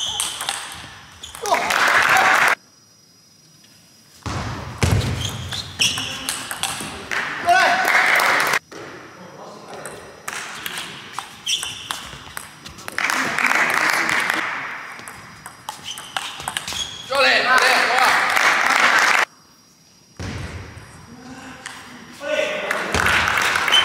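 Table tennis rallies: the plastic ball ticking off the rackets and the table in quick exchanges, with players' shouts and voices in a large hall. The sound breaks off abruptly twice, between points.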